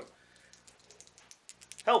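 A few faint, scattered clicks of small gaming dice being gathered and handled in the hand, growing more frequent in the second half.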